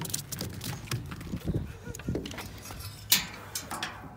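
Scattered clicks, rattles and knocks of handling, with one sharp knock about three seconds in.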